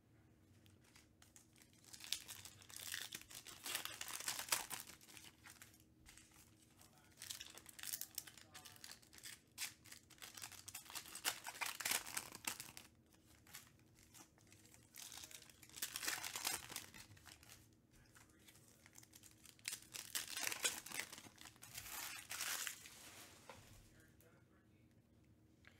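Foil trading-card pack wrappers being torn open and crinkled by hand, in four spells of rustling with short quiet gaps between them.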